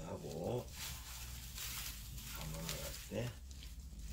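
Sheets of cut white paper rustling and crinkling as they are wound tightly around a spirit-pole shaft, with two short pitched voice-like sounds, one near the start and one about three seconds in.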